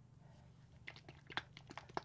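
A handful of faint, sharp plastic clicks in the second half from a plastic squeeze bottle of acrylic paint being handled, its lid being worked.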